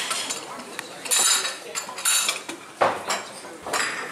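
Ceramic dishes and metal cutlery clinking and clattering at a buffet, a few separate clatters over a background of room noise.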